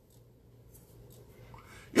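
A pause in a man's speech: near-quiet small-room tone with a few faint soft ticks, then his voice returns right at the end.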